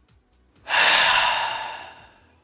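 A man's long, heavy sigh, starting about half a second in and fading out over a little more than a second. He has broken off mid-sentence, choked up.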